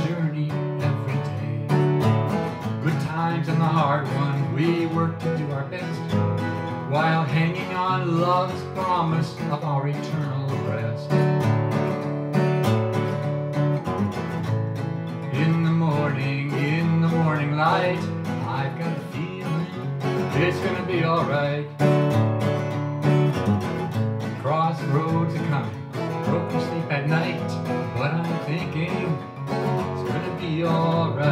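Acoustic guitar strummed in a steady rhythm, with a man singing into the microphone over it.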